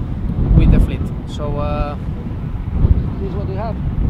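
Strong wind buffeting the microphone on a sailboat's open deck, a heavy low rumble throughout, with a held voiced sound about one and a half seconds in and a brief vocal fragment near the end.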